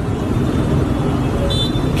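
Steady low rumble of outdoor street noise, with a short high-pitched toot about a second and a half in.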